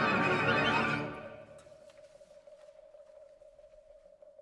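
Symphony orchestra playing loudly with a rising glide in the upper register, breaking off about a second in and leaving a single soft held note.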